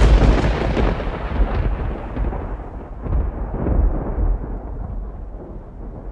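Logo sound effect: a deep boom that starts suddenly, followed by a rolling, thunder-like rumble that swells again about three to four seconds in and slowly fades.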